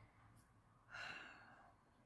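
A woman's faint sigh: one soft breath out, about a second in, lasting about half a second, otherwise near silence.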